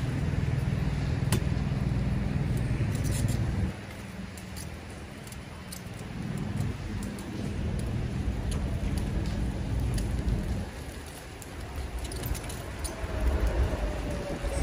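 City street traffic with a steady low engine hum that cuts off suddenly about four seconds in and returns more faintly later, over a background of street noise with scattered light clicks and rattles.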